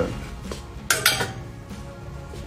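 Two sharp metallic clinks a fraction of a second apart, about a second in: metal clothes hangers knocking against a metal clothes rail.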